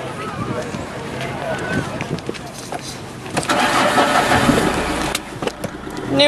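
A car engine cranking and catching a little past halfway, a loud noisy burst lasting under two seconds, then settling to a low steady idle. Faint voices are heard before it.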